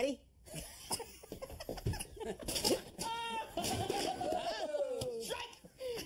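Men laughing and calling out, with a long falling "ohh" after about three seconds and a few scattered knocks in the first half.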